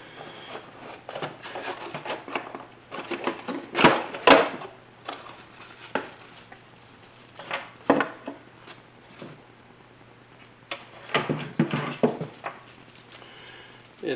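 Cardboard box and plastic pump parts being handled during unboxing: rustling, scraping and scattered knocks, with two loud knocks about four seconds in and more clatter near the end.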